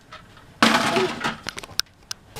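A sudden clatter of small toys being dropped into a toy kitchen cabinet, followed by a few light clicks and one short ringing clink.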